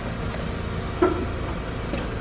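1998 Lexus ES300's 3.0-litre V6 idling steadily, with the climate-control fan running, heard from inside the cabin. A single sharp click about a second in.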